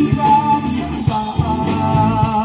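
Rock band playing live: drums, electric guitar, bass guitar and keyboard, with held notes that waver in pitch over a steady drumbeat.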